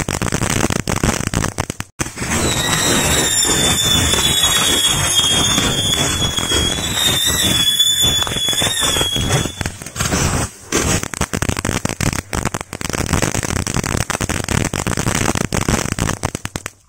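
Thunder Comet crackling fountain fireworks spraying sparks, with dense rapid crackling pops throughout. From about two seconds in, a high, slightly falling whistle sounds over the crackle, fading out near the ten-second mark.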